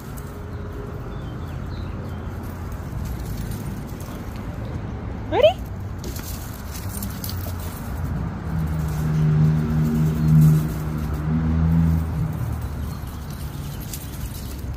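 Steady low outdoor rumble, with a droning engine-like hum from a passing motor vehicle that grows louder from about eight and a half seconds in and fades by about twelve seconds. There is a brief rising squeal about five seconds in.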